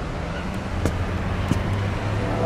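Steady low rumble of road traffic in the outdoor background, with a couple of short light clicks about one and one and a half seconds in.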